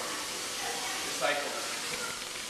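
Food sizzling in a frying pan on the stove, a steady hiss, with faint voices over it.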